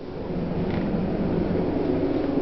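Steady low hum and rumble with a faint held tone inside a Dover hydraulic elevator car, the sound of the car running.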